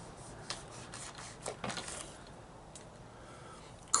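Knife cutting open a fresh chili pepper pod: faint scraping and rubbing with a few soft clicks in the first two seconds, then quieter.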